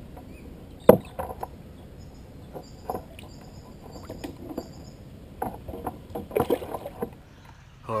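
Water splashing and sloshing against a kayak's hull as a big barramundi is landed alongside, with scattered knocks on the hull. A sharp knock about a second in is the loudest sound, and more splashing follows later on.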